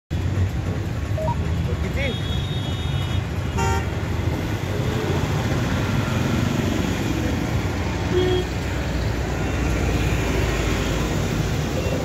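Roadside traffic noise: a steady rumble of passing vehicles, with a couple of short vehicle horn toots in the first few seconds and background voices.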